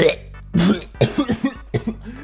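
A run of coughs: one about half a second in, then a quick cluster of short coughs around a second in, as a mock fit of disgust, over quiet background music.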